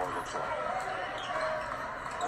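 Television broadcast audio of a basketball game: a ball being dribbled on a hardwood court, with arena crowd noise and a commentator's voice in the background.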